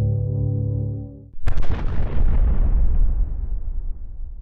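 An ambient music drone stops about a second in, and a sudden cinematic boom hits at once. Its tail fades over about two seconds into a low rumble.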